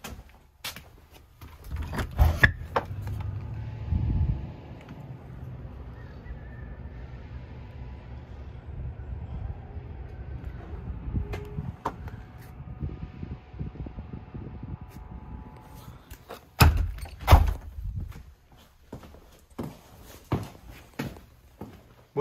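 A heavy door knocking and thunking about two seconds in, then a steady low outdoor rumble, then loud door thuds about three-quarters of the way through.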